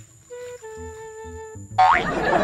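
Background music of short sustained notes over a low pulse, with a quick rising-pitch sound effect near the end.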